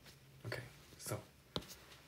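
A stylus tapping once on a tablet's glass screen, a single sharp click about one and a half seconds in, after two short soft vocal sounds.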